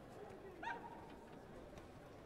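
A brief high-pitched shout, a taekwondo fighter's kihap, rising and then holding for a moment about two-thirds of a second in, over the low murmur of a sports hall.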